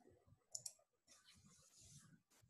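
Near silence on a video call, with two faint quick clicks about half a second in, then a soft hiss.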